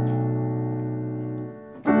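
Piano sound from a digital keyboard: a held chord slowly fades and is released about three-quarters of the way in, then a new chord is struck near the end, the progression resolving to the one chord.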